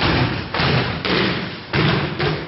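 Bodies falling onto a padded dojo mat in aikido breakfalls: a quick series of about four heavy thuds and slaps within two seconds.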